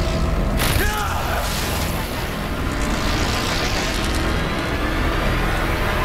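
Dramatic TV soundtrack: a steady low rumble of tense score and sound effects, with a brief strained vocal cry about a second in.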